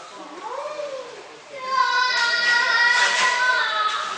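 A young child's high voice singing, holding a long steady note that starts a little under two seconds in, after a brief, quieter vocal sound near the start.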